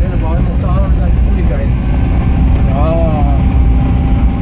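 Steady low rumble of a moving vehicle with wind noise on the microphone, overlaid by brief snatches of a person's voice, once just after the start and again about three seconds in.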